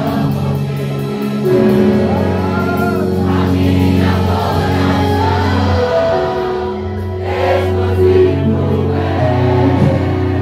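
A congregation singing a gospel worship song together over long held instrumental chords.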